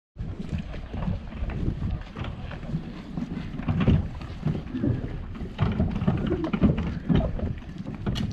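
Wind buffeting the microphone in an uneven low rumble, with scattered footsteps on the wooden boards of a pier.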